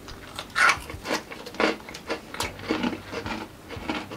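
Crunching of hard, crushed honey mustard pretzel pieces being chewed: a run of irregular crisp crunches about half a second apart.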